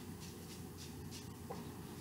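Faint sounds of a man lifting a glass of beer to his lips and sipping, with a small click about one and a half seconds in.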